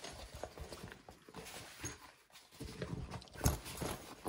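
Nylon packing bags handled and stacked on a wooden table: fabric rustling with irregular light knocks and clicks, busier about two and a half seconds in.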